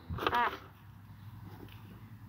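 A short spoken "ah", then only faint background noise.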